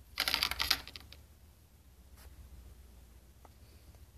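Handling noise: a quick burst of light clicks and clattering about a quarter-second in, lasting about half a second. A few faint single clicks follow over a low steady hum.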